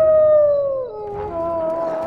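A pack of wolves howling: one long howl slowly sinking in pitch drops lower about a second in, while a second howl at a higher pitch takes over and holds.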